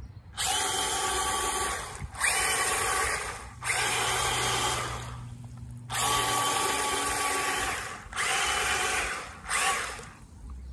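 Spin Master All-Terrain Batmobile RC truck's electric drive motors whining in about six bursts of throttle, a second or two each with short breaks, as its tyres churn through pond water.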